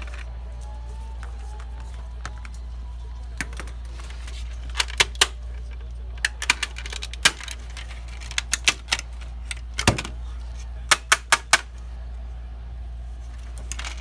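Plastic housing of a PS4 ADP-160CR power supply being pried apart, its snap-fit clips releasing in sharp clicks and snaps. The clicks are scattered from about four seconds in, with a quick run of four near the end.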